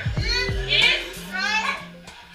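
Several excited, high-pitched voices calling out, over music with steady low notes playing from a television.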